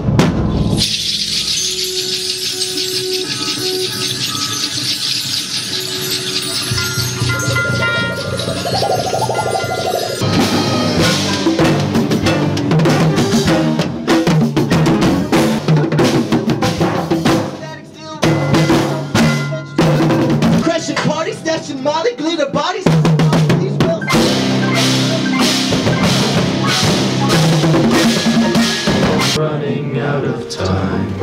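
Live band with drum kit, electric bass, congas and mallet percussion playing a complex piece. For the first ten seconds there is a noisy rattling wash with a few held tones and a pitch that rises, from a metal one-way street sign shaken in an erratic rhythm and picked up on a distorted microphone. The full band with drums then comes in loud, with short breaks near the middle.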